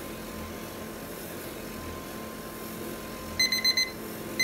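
Electric stirring pan's motor running steadily while its paddle turns. Near the end, a digital kitchen timer starts beeping rapidly and high-pitched as its countdown reaches zero, signalling that the set stirring time is up.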